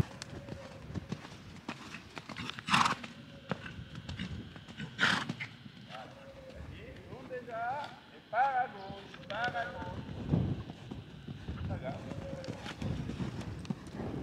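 A grey horse's hooves trotting on a sand arena under a rider, a steady run of soft footfalls, with two short loud bursts about three and five seconds in.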